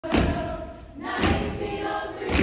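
Stepping routine: two heavy stomps on a stage floor about a second apart, with a group of women's voices chanting together between and after them.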